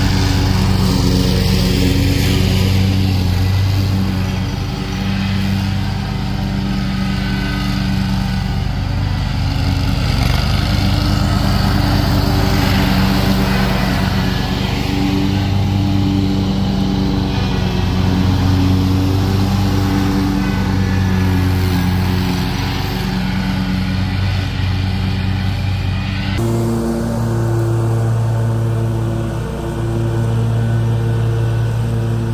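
Toro Grandstand stand-on zero-turn mower engines running steadily under mowing load, with an abrupt change in tone near the end.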